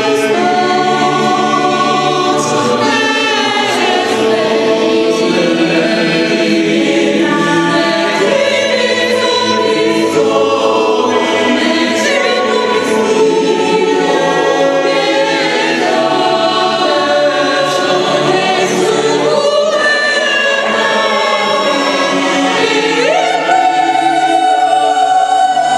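Mixed polyphonic choir of men's and women's voices singing a Christmas carol in harmony, with sustained, continuous singing.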